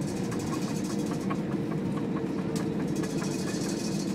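Airbus jetliner heard from inside the cabin while rolling on the ground after landing: a steady low engine and cabin hum with a run of light, regular clicks, several a second.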